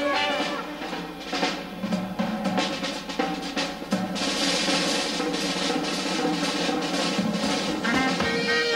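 Swing-band drum break on a jazz drum kit, with sharp separate snare and tom strokes. About halfway through the strokes turn into a dense, continuous snare roll with cymbal wash.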